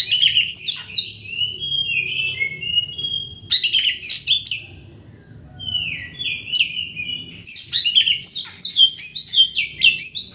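Oriental magpie-robin singing a loud, varied song of whistled falling slurs and quick chattering notes, with a short pause near the middle before the phrases come faster again.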